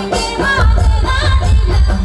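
Adivasi folk song for the Karam dance: singing over a pulsing drum beat.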